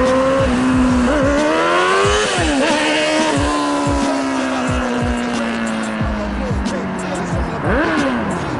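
Suzuki GSX-R 750 inline-four sport bike engine revving hard. Its note climbs steeply about a second in and falls off, then holds a high, slowly sinking pitch. A quick sharp rev rises and drops near the end.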